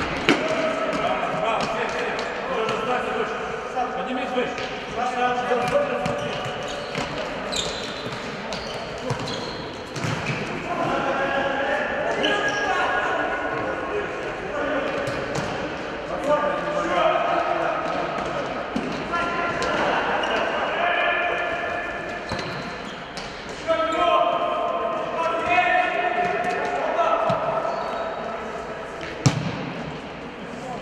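Futsal players' voices calling and shouting across a large indoor sports hall, with the sharp thuds of the ball being kicked and striking the hard floor. The strongest thuds come just after the start and about a second before the end.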